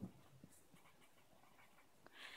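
Near silence with faint strokes of a felt-tip marker writing on paper, and a soft tap at the start.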